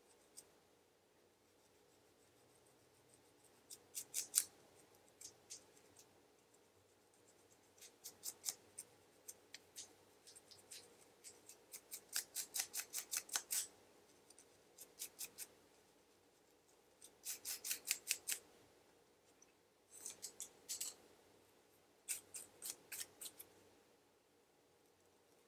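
Scratching strokes raking a dry, flaky scalp through the hair to loosen dandruff: short bursts of several quick, crisp strokes, about seven bursts, with pauses between.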